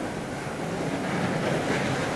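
Steady room noise: an even hiss that grows slowly louder.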